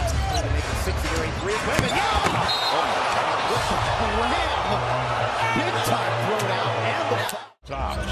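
Live basketball game sound in an arena: a ball being dribbled on the hardwood over a steady crowd murmur with scattered voices and a low hum of arena music. The sound drops out completely for a moment near the end, then the crowd noise resumes.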